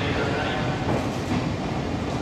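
JNR 12-series passenger coaches rolling slowly past, the wheels giving a few clicks over the rail joints.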